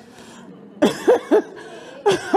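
Three short, sharp vocal bursts from a woman on a close microphone, about a quarter-second apart, about a second in, after a moment of quiet room sound.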